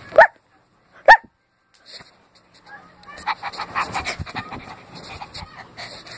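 A child imitating a dog: two short, loud yelping barks about a second apart, then after a pause a run of quick, breathy sounds.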